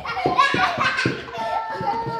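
Young children's voices chattering and calling out as they play, with a few short knocks and footfalls on a hard floor in the first second.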